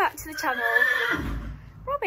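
A horse whinnying: a high call that falls in pitch over about a second and trails off into a low rumble.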